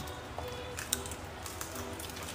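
Faint background music under small clicks and cracks of crab shells being eaten at the table, with one sharper click just under a second in.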